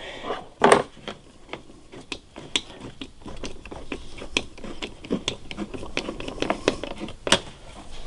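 Hose clamp on a rubber air intake duct being tightened with a 5/16 nut driver: irregular small clicks as the clamp screw turns, with a louder click shortly after the start and another near the end.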